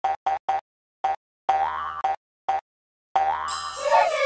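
Cartoon logo intro sound effects: a string of short bouncy "boing" notes, three quick ones and then several spaced out, one sliding down in pitch, followed near the end by a longer rising tone that opens into a sparkling shimmer with a falling whistle.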